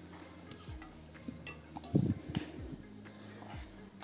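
Steel spoon stirring stuffed baby eggplants in masala in a nonstick kadai: soft scrapes and scattered clinks against the pan, the loudest knock about two seconds in.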